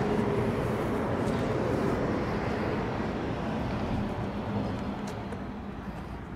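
Motor vehicle engine running steadily, growing a little quieter toward the end.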